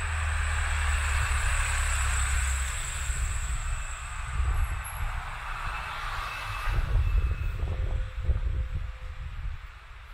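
A car driving past on a narrow street: a steady hiss of tyres and engine that fades away about seven seconds in, once it has passed close by. Low, irregular rumbles follow near the end.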